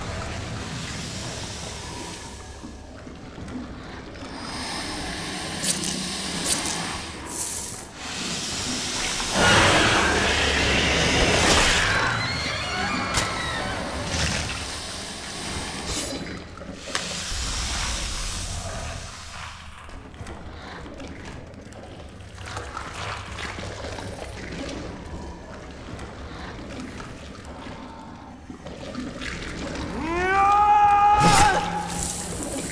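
Film soundtrack: background music mixed with a rushing, noisy sound effect that swells loudest about ten to twelve seconds in.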